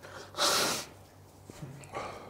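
A man's sharp, pained gasp about half a second in, then quieter breathing, as he reacts to the burning heat of a habanero pepper.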